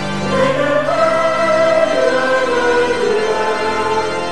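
Mixed church choir singing long held chords of a French liturgical hymn, the parts moving slowly from note to note.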